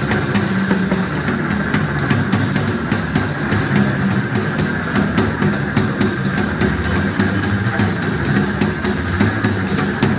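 Experimental improvised music from a double bass and a drum kit, with many quick drum and cymbal strokes over a dense, continuous low sound.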